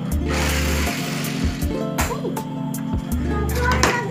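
A small toy car whirring as it rolls fast across a wooden tabletop after a strong push, for the first two seconds, over background music with a steady beat.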